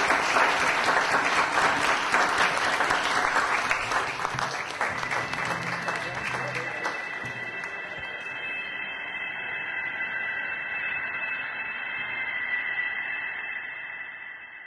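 Audience applauding, fading out over the first seven seconds or so, then a steady high-pitched tone held to the end.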